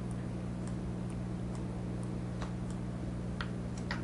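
Steady low electrical hum, with faint, irregular light ticks about two a second from a stylus tapping a pen tablet as a word is handwritten.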